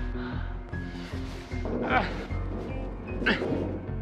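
Background score with steady low sustained tones, and short vocal exclamations ("ah") about two seconds in and again just past three seconds in.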